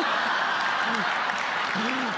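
Live audience applauding, a steady, even spread of clapping, with faint snatches of voice under it.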